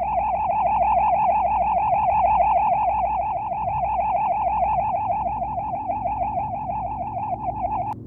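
A single high warbling tone, wavering rapidly in pitch about six times a second, that cuts off suddenly near the end.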